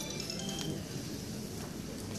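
Quiet room noise of a large hall, with a couple of faint, brief high clinks in the first half.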